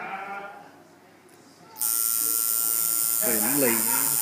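Coil tattoo machine switching on suddenly about two seconds in and running with a steady, high buzz.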